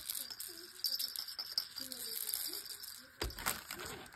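A plush baby rattle shaken by hand, its insides giving a light, fast, high rattle. About three seconds in there is one louder knock as the toy is set down on plastic packaging.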